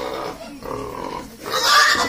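A young pig squealing while it is held up off the ground. There are two cries: a shorter one about half a second in, then a louder, shriller one near the end.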